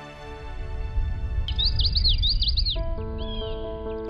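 Birds chirping in a quick run of short, falling chirps about halfway through, over a low rumbling swell of ambient noise, with soft sustained music notes coming in near the end.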